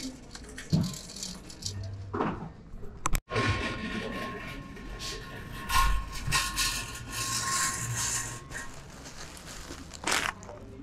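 Wire shopping cart rattling as it is pushed along, with a faint steady tone in the background.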